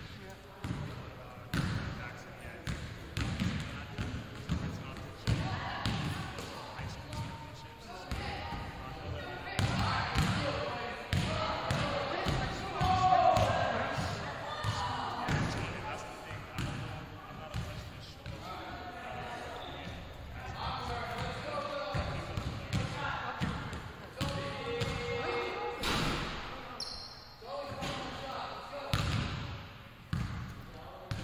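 Basketballs bouncing on a hardwood gym floor, a run of repeated thuds, with people talking in the background.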